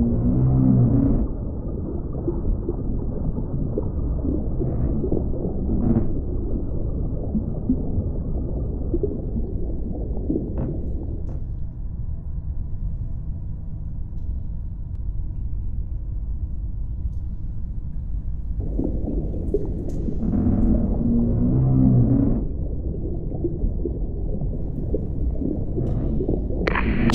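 Deep-sea ambience sound effect: a steady deep rumble, with two louder groaning calls, one at the start and one about 20 seconds in.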